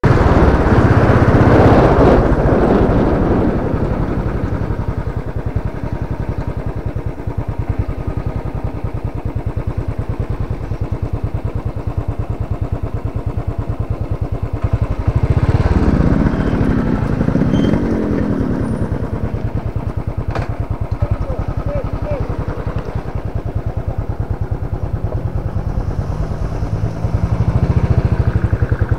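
Motorcycle engine running with a steady, rapid firing beat, loudest in the first few seconds and then settling lower.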